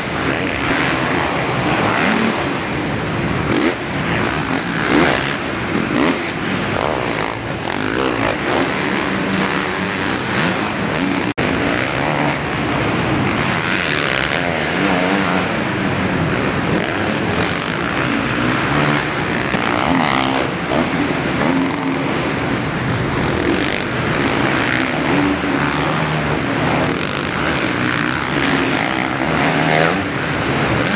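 Motocross bike engines, a Kawasaki among them, revving hard and backing off again and again, the pitch rising and falling as the bikes take the jumps and turns of the dirt track. There is a short break in the sound about eleven seconds in.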